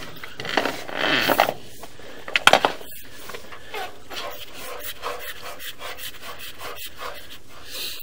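Irregular rubbing and scraping as a sewer camera's push cable is fed by hand into the drain pipe, with short rasps, the loudest about one and two and a half seconds in.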